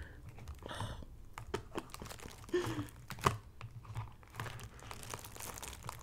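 Plastic wrap sealed over a paper broth cup being picked at with long fingernails, then crinkled and torn back. The sound is a run of irregular crinkles and small clicks, with the sharpest snap about three seconds in.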